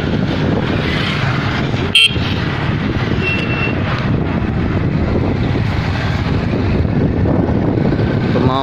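Small motorcycle running at riding speed, its engine and road noise heard steadily from the rider's seat. A short sharp sound stands out about two seconds in.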